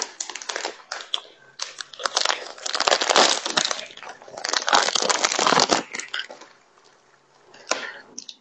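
Plastic bread wrapper crinkling and rustling loudly close to the microphone as it is torn open and the bread pulled out, in several long bursts with short pauses. There is one brief crinkle near the end.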